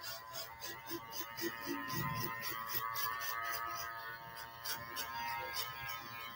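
Electric hair clipper running steadily at low level as it cuts a low fade around the side of a mannequin head, with background music underneath.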